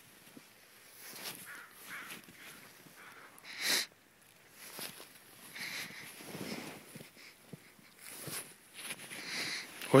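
Bernese Mountain Dog breathing hard as it pushes through deep snow: irregular huffs and snow crunching, with one louder short burst a few seconds in.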